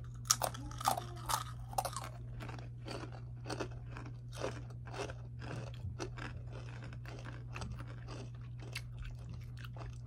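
Two people biting and chewing rolled tortilla chips (Takis). The loudest crunches come in the first two seconds, then steady chewing at about one to two chews a second.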